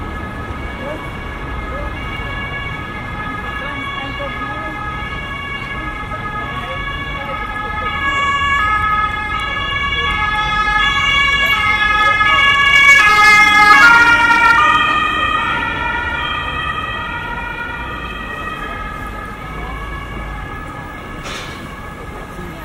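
Emergency vehicle's two-tone siren, alternating between two pitches. It grows louder as the vehicle approaches, and at its loudest, about halfway through, its pitch drops as it passes. It then fades into the low rumble of street traffic.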